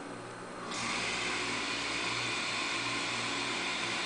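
Minipa Smartman robot arm's motors whirring steadily as the arm swings round at its base, starting a little under a second in. A faint steady electrical hum runs underneath.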